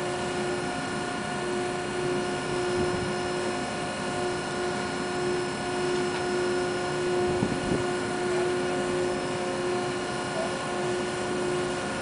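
Ship's machinery running with a steady hum of several held tones over a noise haze, with a couple of knocks a little past the middle.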